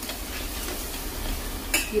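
Onion, ginger and garlic paste sizzling in hot oil in a stainless steel pot, with a steel ladle stirring and scraping the metal; near the end comes one sharp clink as the ladle is laid down against the pot.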